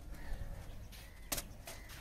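Quiet outdoor ambience with a faint, thin bird call, and a single sharp click about a second and a half in.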